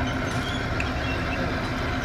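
Turbo Systems hinged steel-belt chip conveyor running under its 0.37 kW three-phase gear motor: a steady hum and low rumble from the motor and the belt travelling over its sprockets, with faint high squeaks through it.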